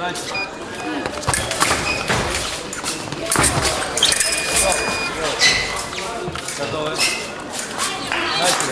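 Fencers' feet thudding on the piste during a bout, with voices calling out across a large, echoing hall. About four seconds in, an electronic scoring-machine tone sounds steadily for about a second, signalling a touch.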